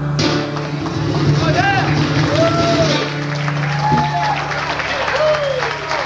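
A resonator guitar's last strummed chord rings out, then audience members whoop and cheer several times over scattered clapping.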